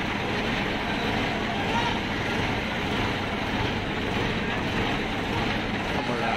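Mobile crane's diesel engine running steadily under load as it holds a heavy statue aloft, with the chatter of a large crowd over it.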